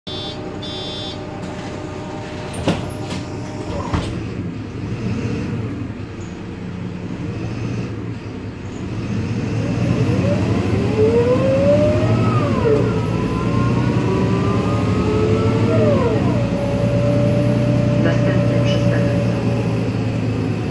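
MAN NL283 city bus pulling away, heard from inside, its ZF automatic gearbox whining over the engine drone. The whine climbs in pitch, drops sharply at an upshift, climbs again, drops at a second upshift, then holds steady. Two sharp knocks come in the first few seconds.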